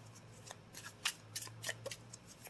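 A deck of tarot cards being shuffled by hand: faint, scattered soft flicks and slides of card stock, a few to a second.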